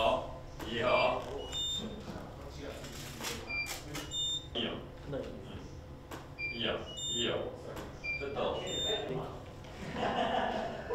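Indistinct voices talking in a room, with repeated short, high electronic beeps at a fixed pitch every second or so.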